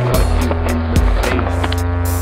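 Skateboard wheels rolling on concrete under a rap backing track with a steady deep bass and evenly spaced ticks.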